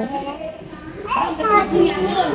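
A toddler talking in unclear, high-pitched speech, starting about a second in after a short lull.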